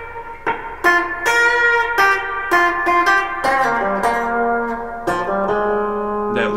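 Semi-hollow electric guitar picking a run of single notes, about one every half second, with a lower note held near the end: the lead-in of F, G and G sharp (A flat) into the song's main riff in B flat.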